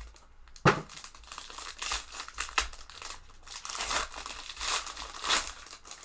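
Foil hockey card pack wrapper being torn open and crinkled by hand: a run of irregular crackling crinkles, the sharpest just under a second in.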